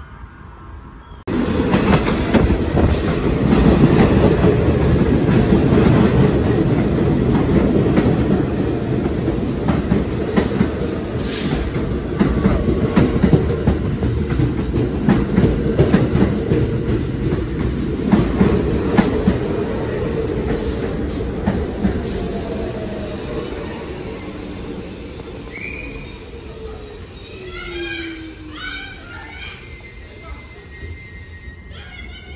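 New York City subway train running close past the platform, wheels clacking over the rail joints; the noise starts abruptly about a second in. Near the end it fades as the train slows, with a falling whine and a few short high squeals.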